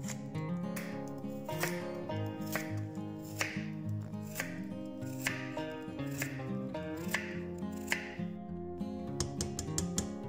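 Chef's knife slicing carrots and parsnip into rounds on a wooden cutting board, with a sharp strike about once a second and a quicker run of cuts near the end, over background music.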